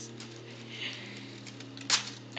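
A single short, sharp tear of construction paper near the end, as a small piece rips off a paper-chain link being pulled at by small hands.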